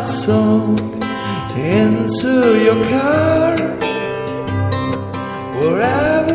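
Acoustic guitar playing the intro of a song in a live performance, with notes bending in pitch.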